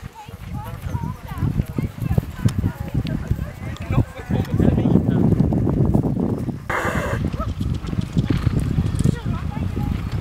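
A ridden horse's hooves thudding on grass turf at trot and canter, a steady run of dull hoofbeats.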